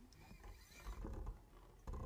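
Faint scattered clicks and rustles of people handling things between pieces, with one sharper knock near the end.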